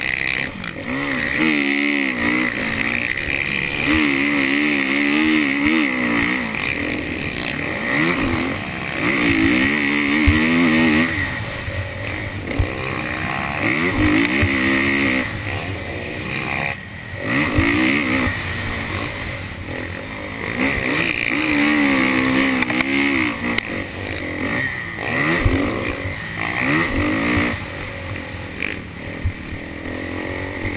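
Motocross dirt bike engine racing over a track, revving up hard and backing off again every few seconds as the rider shifts and throttles through bumps and corners, with a few short knocks.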